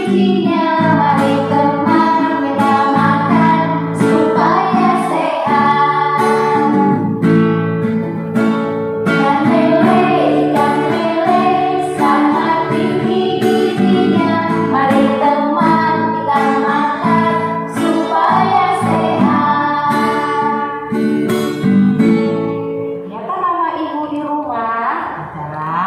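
Women singing a children's song to a guitar accompaniment, stopping shortly before the end.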